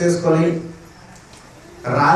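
A man's voice speaking into a hand-held microphone. A drawn-out syllable trails off, then there is a pause of about a second before he speaks again near the end.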